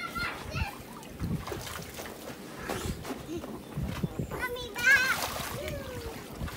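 Water splashing in the shallow splash pool of an inflatable water slide as a small child slides down into it, with several splashes and the biggest burst about five seconds in. A child's voice rises over it at the start and again around the big splash.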